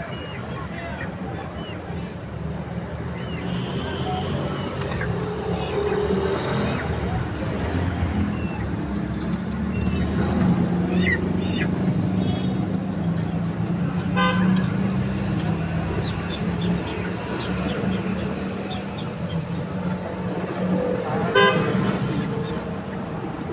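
Street traffic: a steady engine hum that grows louder toward the middle, with a few short horn toots and voices in the background.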